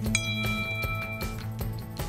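Background music with a steady beat. Just after the start, a single bright chime rings for about a second: a smartphone's incoming text message alert.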